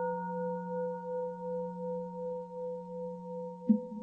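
A Buddhist bowl bell ringing on after a strike, a deep hum with clear higher tones that fades slowly and swells and ebbs about once every second and a half. A sharp short knock comes near the end.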